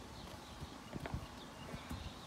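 A few faint, irregular soft thumps, about a second in and again near the end: a child's inflatable play ball bouncing and small feet in rubber boots on a concrete path.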